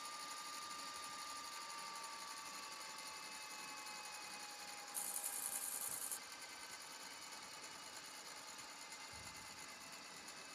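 Toshiba VCR running a VHS tape backwards, its tape transport whirring with thin tones that slowly fall in pitch. A brief high hiss comes about five seconds in and lasts about a second.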